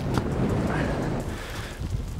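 Wind buffeting a clip-on lapel microphone: a steady, rumbling rush.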